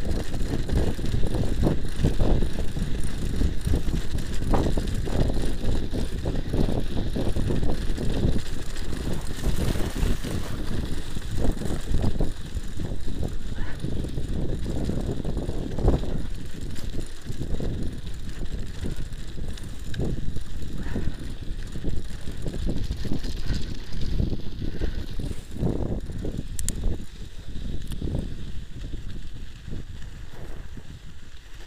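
A bicycle riding over a bumpy packed-snow road, heard from a handlebar-mounted camera: a continuous low rumble with frequent irregular knocks and rattles, easing a little near the end.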